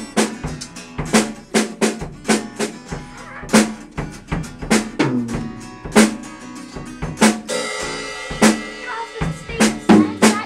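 A drum kit played by a beginner on his first try, on a kit set up for a left-hander: bass drum and snare strokes about twice a second, with a cymbal ringing on from about three quarters of the way in. An acoustic guitar is strummed along underneath.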